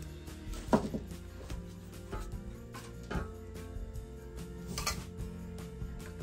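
Soft background music, with a few sharp knocks and clinks of a metal cheese grater being handled, the loudest less than a second in.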